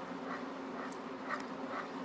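Silicone spatula stirring a thick, wet chana dal paste in a nonstick pan: soft squelching strokes about twice a second, over a steady low hum.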